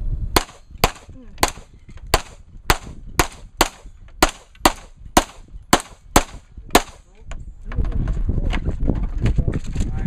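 A string of about thirteen gunshots fired in quick succession, roughly two a second, at a multigun match stage. After them comes a low rumble of wind on the microphone.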